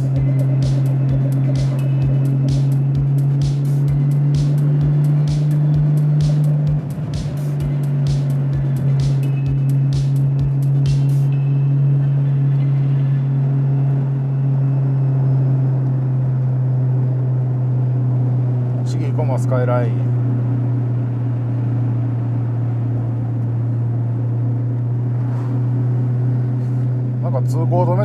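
Nissan Skyline GT-R (BCNR33) RB26DETT twin-turbo straight-six cruising, heard from inside the cabin as a steady low drone with wind noise on the microphone; the engine note drops a little about seven seconds in. A run of quick, evenly spaced ticks sounds over the first ten seconds or so.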